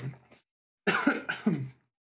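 A man coughs twice, two short coughs about half a second apart.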